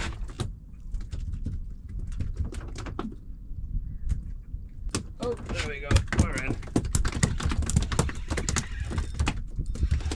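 Steady low rumble of wind and water around a small open boat, with scattered clicks and knocks and a short exclamation about five seconds in.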